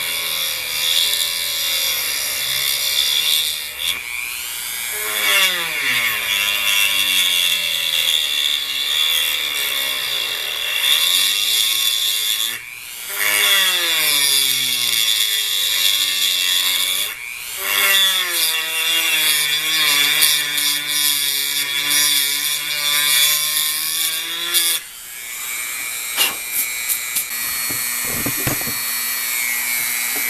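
Handheld rotary tool with a diamond-coated bit grinding into sedimentary stone, its motor whine wavering in pitch as the bit bears on the stone, over a hiss of grinding. Light, slow cuts outlining the edge of a letter. The tool drops out briefly twice, and the grinding stops about 25 seconds in, leaving a steadier hum.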